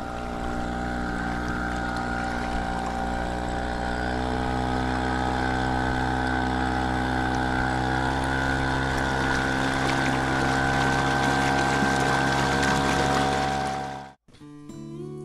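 Small 4 HP outboard motor running steadily under load, towing a line of kayaks. Its pitch holds steady, and it cuts off suddenly at the very end.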